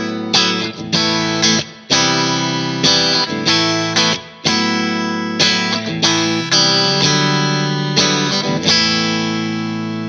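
Vola Vasti KJM J2 semi-hollow electric guitar played through an amp on a clean tone, on the bridge and middle pickups with its humbuckers tapped to single-coil mode. Chords are struck in a loose rhythm about every half second to a second, and the last chord, struck near the end, rings out and fades slowly.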